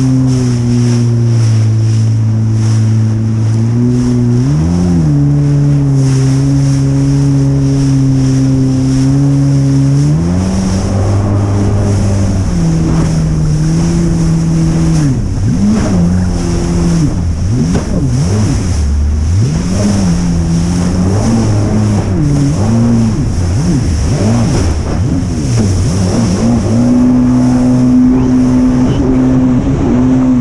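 Jet ski engine running under way across a choppy sea, with a steady rush of water. The engine note holds steady for about ten seconds, with one brief rev, then rises and falls repeatedly before settling again near the end.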